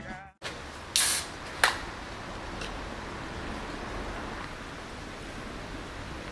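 A beer can being opened: a short hiss about a second in, followed by a sharp click, over a steady low background hiss.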